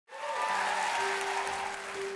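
Audience applause that thins out, with a steady held note of the song's backing music coming in underneath about a second in.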